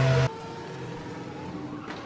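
Formula One car's engine running loud and steady, then cutting off abruptly about a quarter second in to a quieter, steady hum.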